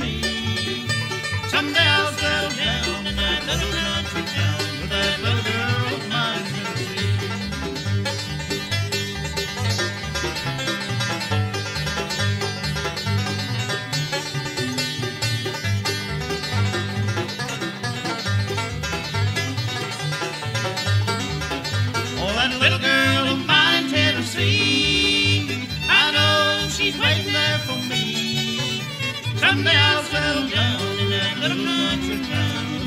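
Bluegrass band playing an instrumental break with banjo, fiddle and guitar over a steady bass pulse. Higher sliding lead lines stand out about two-thirds of the way through.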